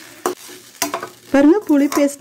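A spoon stirring and turning cooked tamarind rice in a stainless steel kadai, with a couple of sharp clicks of the spoon against the pan. A voice starts speaking about two-thirds of the way in.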